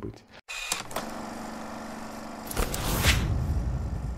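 Channel logo transition sting made of sound effects: a whoosh over a held tone, then about two and a half seconds in a low boom with a bright swoosh, fading away.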